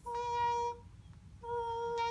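Beatboxer's mouth-kazoo: a hum buzzed through the bottom lip vibrating against the edge of the top teeth. Two held notes on the same steady pitch, a short one and then, after a break of about half a second, a longer one.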